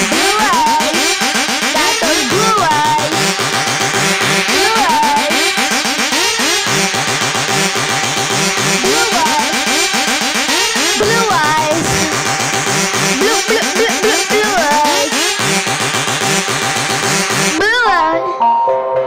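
Instrumental break of an electronic song: a heavy synth bass growls and bends up and down in pitch over a steady beat, with a rising sweep just before the end.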